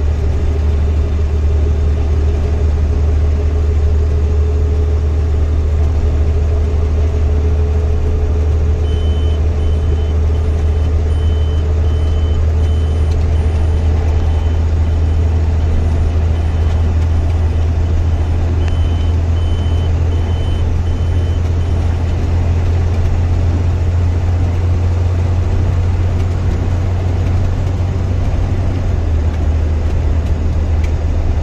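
Steady low drone of a semi-truck's engine and road noise heard inside the cab while driving on the highway. A faint, broken high beeping comes and goes in the middle stretch.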